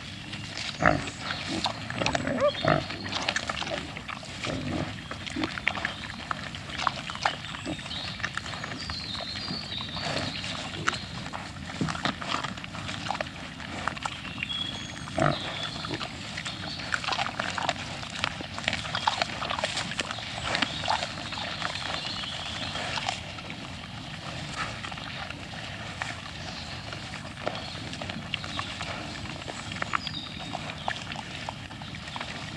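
A herd of wild boar feeding: a dense, irregular run of short animal sounds and rooting noises that is busiest in the first two-thirds and calmer near the end.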